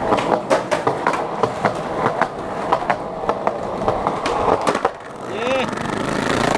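Skateboard wheels rolling on concrete, with repeated sharp clicks as they cross joints and cracks in the pavement. Near the end there is a brief gliding tone.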